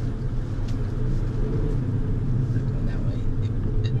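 Engine and road noise inside the cabin of a small two-seat sports car driving along, a steady low hum.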